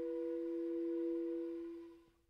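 Closing held tones of a contemporary chamber-ensemble piece: two steady, pure-sounding pitches, one lower and louder, that fade out and stop right at the end of the piece.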